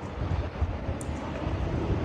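Wind buffeting a handheld phone's microphone while walking outdoors: an uneven low rumble, with a faint click about a second in.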